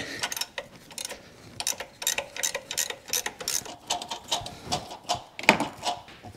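Socket ratchet clicking in runs as a 24 mm socket backs out the press bolt of a front crankshaft seal installer tool.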